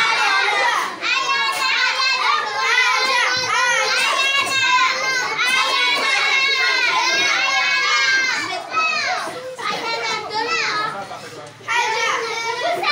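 Many children's voices talking and calling out over one another, high-pitched and overlapping, dropping off briefly a little before the end.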